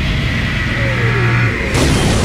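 Cinematic logo sound effect: a rumbling, noisy build with a low hum and a falling whine, ending in a sudden explosion-like hit near the end that rings on.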